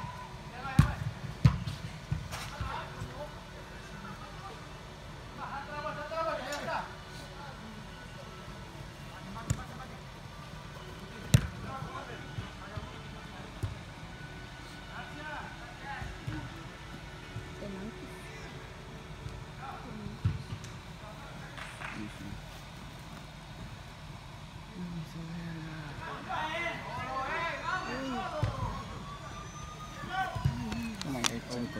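Indoor five-a-side soccer in a large fabric-domed hall: scattered sharp ball kicks and thuds, the loudest about eleven seconds in, over a steady low rumble, with distant players' shouts now and then.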